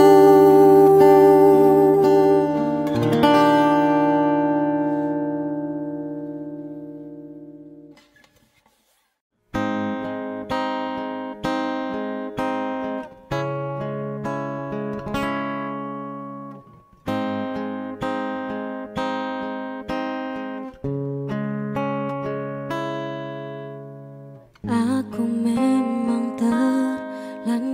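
Acoustic guitar cover music: a held sung note and a guitar chord ring out and fade to silence about eight seconds in. After a short gap a new song starts with a fingerpicked acoustic guitar intro, and singing comes back in near the end.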